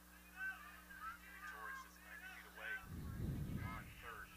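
Faint, repeated short honking calls of birds, many in quick succession, with a low rumble about three seconds in.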